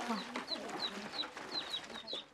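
A bird chirping: a run of short, high chirps repeated about three times a second.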